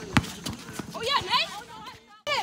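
Basketball bouncing on an outdoor hard court, a sharp bounce just after the start and another about half a second in, with short raised voices of players calling out through the middle.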